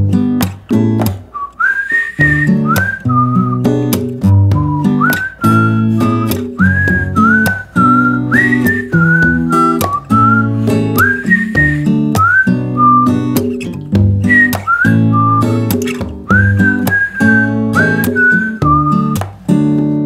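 Instrumental break in a song: a whistled melody, its notes scooping up into pitch, comes in about a second and a half in over strummed acoustic guitar.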